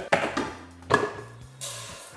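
An electric rice cooker being opened: a click, then a sharp clack with a short ring about a second in as the lid comes up. Near the end comes a hiss of dry wild and brown rice blend pouring from a measuring cup into the cooker's inner pot.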